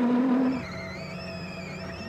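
Rally car engine revving, its pitch climbing, for about the first half second. It then gives way to a quieter wavering high tone over steady low held notes.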